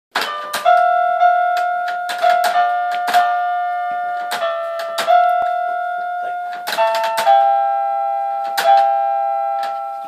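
Small toy electronic keyboard pawed by a dog: about ten clumsy strikes, each pressing several keys at once, so clusters of held, overlapping notes ring on and slowly fade between presses.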